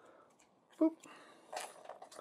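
Hard plastic action-figure sword parts being handled, with faint clicks and rubbing as the blade pieces seated in the hub are turned in the hands, mostly in the second half. A spoken "boop" about a second in.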